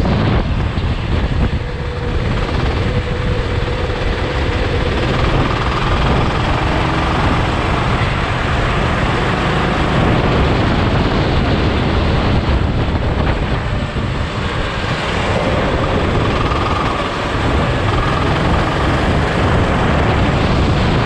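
Go-kart engine running at speed on track, with loud wind and road rush on the on-board camera's microphone and a faint engine pitch that comes and goes.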